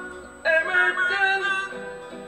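A man singing a slow calypso ballad to his own acoustic guitar; after a brief lull a new sung phrase begins about half a second in and trails off toward the end.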